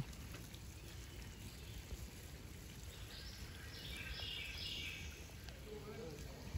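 Quiet woodland ambience: a steady low rumble, with faint high bird calls for a couple of seconds about halfway through.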